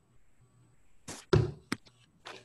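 Handling noise close to the microphone: three short, sharp knocks in quick succession, starting a little past a second in.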